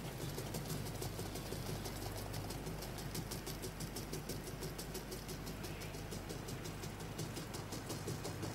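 Rice grains trickling through a tall glass laboratory funnel into a beaker, a faint, fast, even pattering over a steady low hum.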